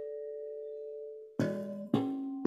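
Chime-like harmonics on an electric bass guitar. One harmonic rings on and fades, then two more are plucked about a second and a half in and just before the end.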